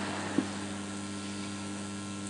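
Steady electrical mains hum from the public-address system, a low buzz over a faint hiss, with one small click a little under half a second in.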